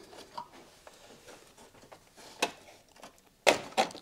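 Plastic under-bonnet fuse box of a Vauxhall Zafira B being worked loose by hand: faint rubbing and rattling, a click about halfway, then two sharp snaps near the end as the box comes free.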